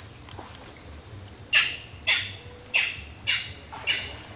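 A bird in the mangroves giving a series of five loud, harsh calls in quick succession, about two a second, starting about a second and a half in.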